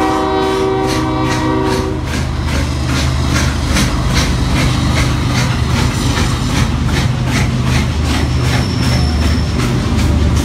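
Norfolk & Western 611, a Class J 4-8-4 steam locomotive, sounding its chime whistle, which cuts off about two seconds in. The engine then works its train with rapid, even exhaust chuffs, about three to four a second, over a steady low drone.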